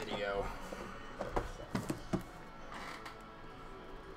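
Faint background music, with a handful of sharp knocks from boxes being handled on a table about a second to two seconds in.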